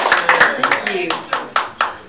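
Small audience's applause dying away to a few scattered claps, with voices talking underneath.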